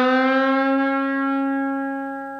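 Schecter electric guitar sustaining a single note fretted at the fourth fret of the G string and given a full bend. The pitch rises slightly at first, then holds steady and slowly fades.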